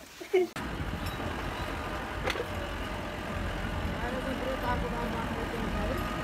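Wind buffeting a phone microphone outdoors: a steady rumbling roar of noise that starts abruptly about half a second in, with a single sharp click a little past the two-second mark and faint voices under it.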